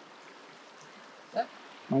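Faint steady rush of a shallow creek running over rocks. A brief voice sound comes about one and a half seconds in, and a man starts speaking at the very end.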